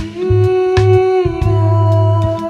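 Live band music: a male singer holds one long sung note that steps slightly down in pitch a little past halfway, over bass notes and drum hits.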